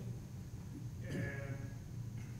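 Faint, distant voice speaking a word or two off-microphone about a second in, over a steady low room hum.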